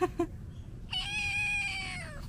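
A kitten gives one long, high meow about a second in, slowly falling in pitch, answering its name being called. It is preceded by two very short squeaks.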